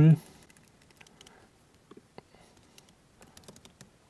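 Typing on a computer keyboard: scattered key clicks, bunching into a quick run of keystrokes near the end.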